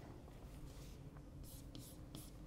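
Chalk writing on a blackboard, faint, with a few short scratchy strokes near the end.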